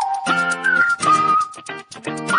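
Background pop music: a whistled tune over a rhythmic accompaniment.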